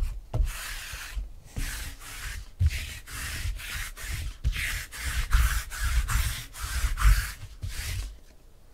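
Adhesive lint roller rolled back and forth over a tabletop, in repeated quick rubbing strokes with the crackle of sticky tape, a few strokes a second. The rolling stops near the end.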